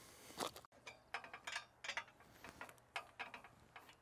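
Socket ratchet wrench with a 13 mm socket clicking in short irregular runs, with light metallic clinks, as it works the clamp nuts of an Alaska chainsaw mill loose.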